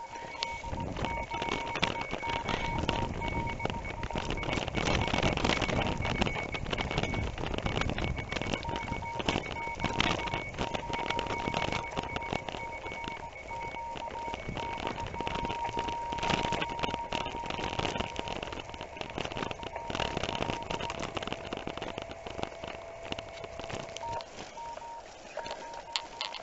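Bicycle rolling over a gravel track: a steady rumble of tyres on grit with rattles from the loaded bike. Over it, a thin steady whistle tone from the handlebar amateur radio keys on and off, with a lower second tone joining near the end.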